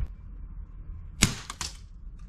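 A gas-powered P226 airsoft pistol fires once with a sharp crack a little over a second in. Two fainter clicks follow as the pellet strikes and bounces.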